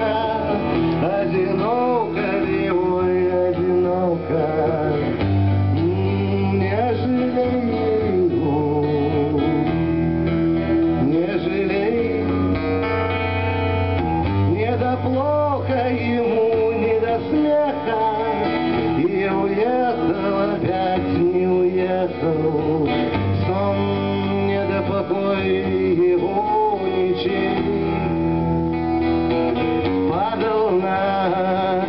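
A male voice singing to a strummed acoustic guitar, played live through a small club's sound system. The song runs on without a break.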